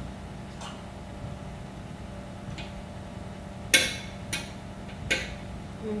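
Sharp clicks of a metal knife against a granite countertop while dough is being cut, a handful of them with the loudest just under four seconds in, over a low steady hum.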